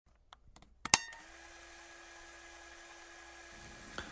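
A few faint clicks, then one sharp, loud click with a short ringing tail about a second in, followed by a faint steady hum.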